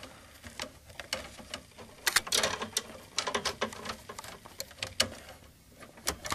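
Irregular small metallic clicks and scrapes as a nut is turned by hand on a battery terminal stud to fasten a wire's ring terminal, with wires rustling against each other.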